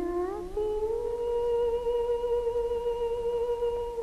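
A woman's wordless singing voice. It climbs in small steps, then holds one long note with a slight waver that fades near the end.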